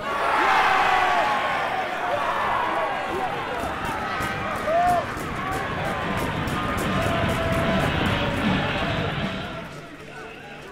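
Football crowd cheering and shouting at a goal, breaking out suddenly and easing off near the end.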